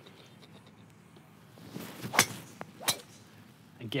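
A Titleist TSR driver swung at a golf ball: a brief rising swish, then a sharp crack as the clubhead strikes the ball about two seconds in. A second, quieter click follows under a second later.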